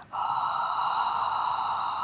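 A long, steady breath blown out through pursed lips, the exhale phase of Pilates breathing. It starts a moment in and holds even throughout.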